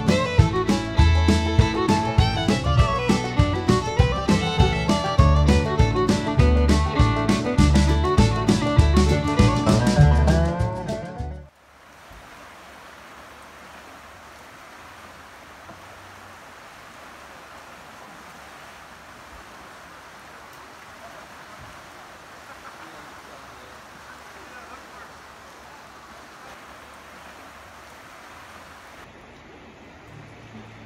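Fiddle-led music with a strong, steady beat, which stops abruptly about eleven seconds in. It gives way to the steady rush of the high, swollen creek flowing past a bridge pier.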